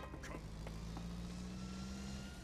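Car engines running: a faint, steady low hum.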